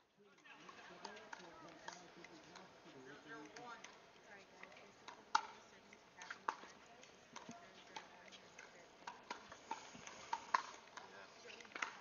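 Pickleball paddles hitting the plastic ball back and forth in a rally: a string of sharp pops from about five seconds in, roughly one every half second to a second, the loudest first. Faint voices murmur underneath.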